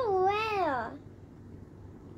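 A child's wordless sing-song vocal sound: one drawn-out note that wavers up and down and falls away, lasting about a second, then quiet room noise.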